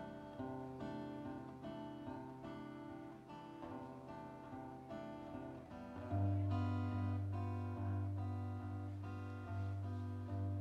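Acoustic guitar played solo, picked and strummed notes in an instrumental passage with no singing. About six seconds in it gets louder, with strong, repeated bass notes.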